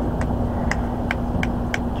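A steady low hum over a rumbling background, with five faint short clicks spread unevenly through it.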